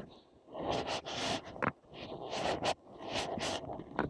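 Close, irregular rustling and scraping in several short bursts: clothing rubbing over a chest-mounted phone camera as the wearer moves about.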